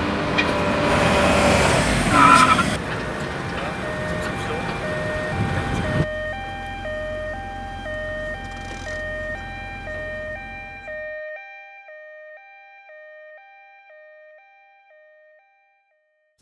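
Two-tone emergency vehicle siren alternating between two pitches about twice a second. It comes in clearly about six seconds in over mixed background noise and fades away over the last few seconds.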